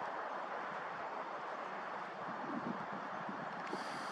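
Steady outdoor background noise: an even hiss with no distinct calls, knocks or other events.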